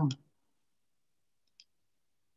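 The end of a spoken word right at the start, then silence broken once by a single short, faint click about one and a half seconds in.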